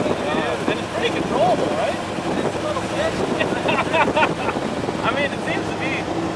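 Driving noise from inside a custom 1968 Dodge Charger cruising on a street, with its engine running under wind noise on the microphone. Indistinct voices talk over it throughout.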